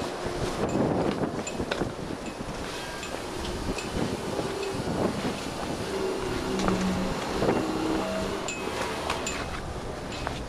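Wind buffeting a handheld camera's microphone, with scattered clicks of handling noise as the camera is carried along.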